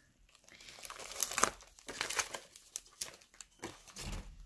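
Small plastic zip bags of glitter crinkling as they are handled and rummaged through, in irregular rustles, loudest about a second and a half in.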